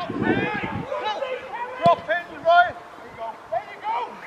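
Footballers on the pitch shouting and calling to each other, with one sharp thud a little under two seconds in, like the goalkeeper kicking the ball upfield.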